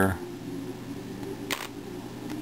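Plastic 3x3x3 Rubik's cube having its top layer turned by hand, giving one short click about one and a half seconds in, over a faint steady hum.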